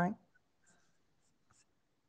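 A few faint, scattered clicks of keys being tapped on a laptop keyboard, just after a voice stops.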